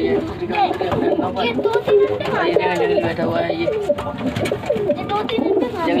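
Domestic pigeons cooing over and over, several calls overlapping, mixed with other birds' calls.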